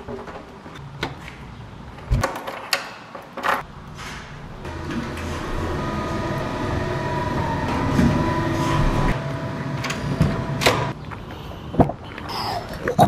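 Door latch and door clicks, then an elevator running with a steady hum and faint whine for about five seconds. Near the end come a couple of sharp clicks from a car door handle.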